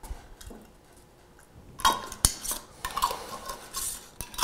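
Glass mason jars and their metal screw lids being handled: quiet at first, then from about two seconds in a run of sharp clinks and scrapes of metal against glass.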